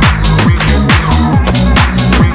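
Electronic dance music from a UK garage and bassline DJ mix: a steady kick drum a little over twice a second under a deep, stepping bass line and crisp hi-hats.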